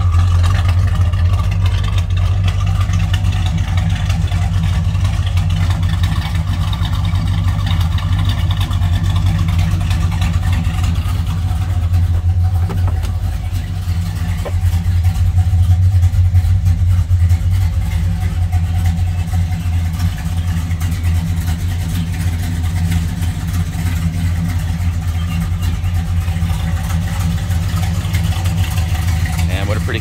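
1967 Plymouth Belvedere GTX's 440 Super Commando big-block V8 idling steadily through its exhaust. It swells briefly about halfway through.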